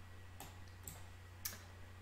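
Three faint, sharp clicks at a computer, about half a second apart with the last one loudest, over a low steady hum.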